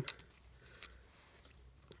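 Quiet handling of a small wire spring and the plastic throttle-handle housing of a petrol trimmer, with a few faint clicks, the clearest a little under a second in.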